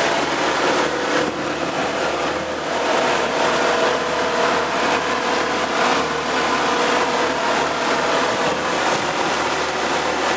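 A 1987 Force 35 HP two-stroke outboard motor running steadily, pushing a pontoon boat along at cruising speed.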